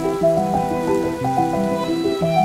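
Soundtrack music: a gentle texture of quick, overlapping sustained notes that change every fraction of a second.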